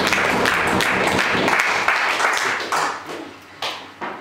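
Audience applauding at the end of a song, dying away about three seconds in.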